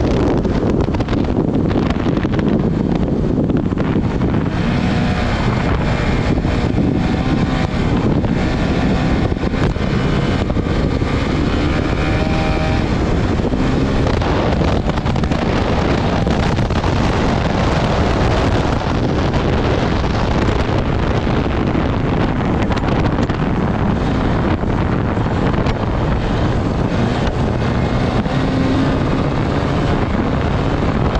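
Honda CRF450RL single-cylinder four-stroke engine running hard at speed, under heavy wind noise on the microphone. Its pitch rises and falls with the throttle in the middle of the stretch.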